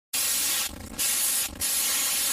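Loud static hiss, like a dead broadcast channel, starting abruptly and cutting out briefly twice.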